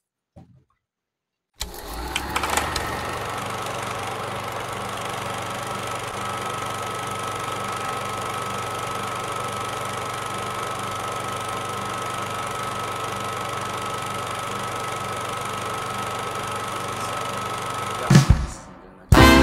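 Steady machine-like running noise with a low hum and a thin, high, steady whine. It starts suddenly about a second and a half in, after near silence, and comes from the opening of the music video being played, before the music begins.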